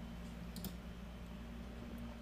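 Two faint computer-mouse clicks close together about half a second in, pausing a video, over a low steady electrical hum.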